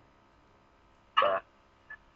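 A single short vocal sound from a man, a brief syllable-like 'uh' of about a quarter second a little after one second in, between stretches of quiet room tone.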